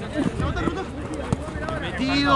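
Overlapping shouts and calls from football players and onlookers on an outdoor pitch, with a single sharp knock a little over a second in.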